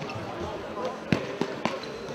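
A futsal ball kicked and bouncing on a sports-hall floor: three sharp thuds about a quarter of a second apart, a little past halfway, with the first the loudest. Voices murmur in the hall behind them.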